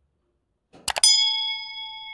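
Two quick mouse clicks about a second in, followed by a bright bell ding that rings for about a second and then cuts off suddenly. This is the sound effect of a subscribe-button and notification-bell animation.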